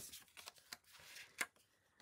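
Faint rustling and light taps of cardstock pieces being handled and laid on a paper layout, with one sharper click about one and a half seconds in.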